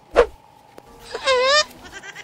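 A sharp thump, then about a second later a goat's single short bleat with a wavering pitch.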